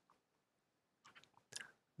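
Near silence between stretches of narration, with a few faint short clicks in the second half, likely mouth sounds just before speaking.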